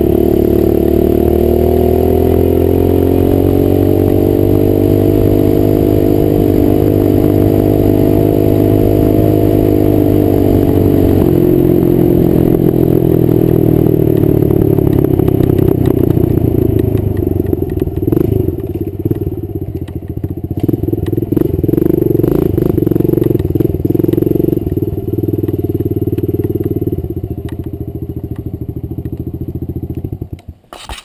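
Kawasaki KLX110 mini dirt bike's small four-stroke single-cylinder engine running under load, its note held steady at first. After about eleven seconds the note changes, and over the second half the throttle rises and falls unevenly as the bike slows, the engine dropping quieter near the end.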